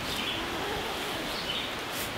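Quiet woodland background: a steady hiss with a few faint bird calls.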